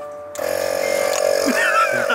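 Portable 12-volt tire inflator's motor switching on about a third of a second in and then running with a steady hum.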